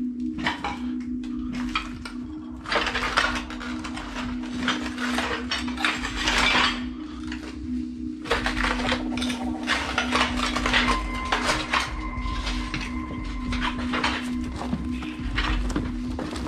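Footsteps crunching and clinking over broken ceramic tiles and rubble, an irregular run of scrapes and clinks. A low steady drone runs underneath.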